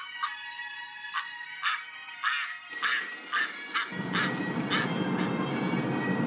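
Mallard ducks quacking, a run of about ten quacks roughly two a second, over background music. About halfway through, the steady rushing of a small stream over rocks comes in and grows louder.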